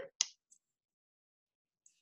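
Near silence broken by one short, sharp click about a fifth of a second in, with a much fainter tick shortly after and another near the end.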